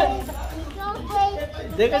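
Voices only: a toddler's short, high-pitched vocal sounds mixed with adults' quieter talk.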